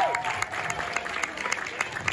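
Audience applauding, individual hand claps dense and irregular, with voices in the crowd mixed in.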